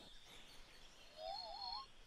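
A short, faint warbling bird call, wavering and rising in pitch, starting a little over halfway through after near silence.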